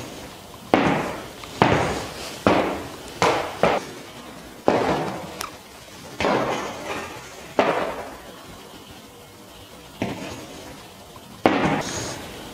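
Stiletto heels of knee-high boots clicking on a hard studio floor as the wearer steps and shifts her weight: about ten sharp, irregularly spaced clicks, each echoing briefly in the room.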